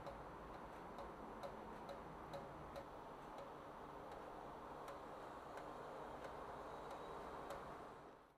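Faint room tone with light, sharp ticks at uneven intervals, roughly one every half second to a second.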